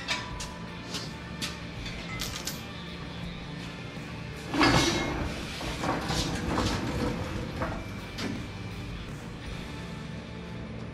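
Shop engine hoist being rolled away across a concrete floor, with scattered clicks and knocks and one louder clank about four and a half seconds in, over background music.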